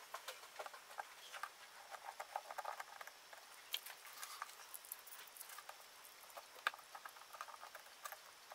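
Faint, scattered clicks and taps of small plastic spring clamps being handled and clamped onto a wooden trim strip along the edge of a fiberboard box.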